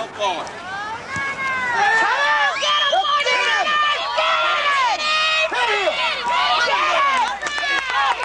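Football spectators and sideline players yelling and cheering during a running play, many voices overlapping in rising and falling shouts with no pause.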